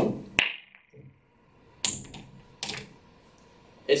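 Slow break in 9-ball: the cue tip strikes the cue ball at the start, and the cue ball clacks into the racked balls about half a second later with a short ring. Two more sharp clacks of pool balls follow, near two seconds in and a little under a second after that, as the spread balls hit each other and the rails.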